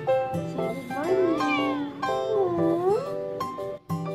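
Persian cat meowing twice, each call bending in pitch, over background music.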